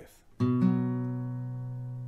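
Acoustic guitar: the B shape played on just the fifth and fourth strings, struck once about half a second in and left ringing, slowly fading.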